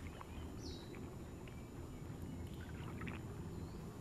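Faint lakeside outdoor ambience: a steady low rumble with a light hiss, and one brief high chirp about half a second in.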